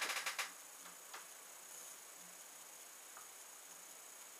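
Beer poured from a glass bottle into a glass, the stream glugging in quick pulses and breaking off about half a second in. Faint fizzing and ticking of the rising foam head follows, with one light click about a second in.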